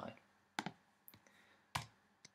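Two sharp computer keyboard key clicks, about a second apart, the second one louder.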